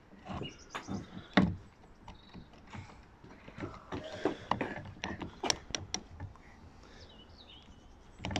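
Scattered light metallic clicks and knocks from a failed Lucas starter motor as its drive pinion and nose housing are turned and shifted by hand, with a louder knock about a second and a half in.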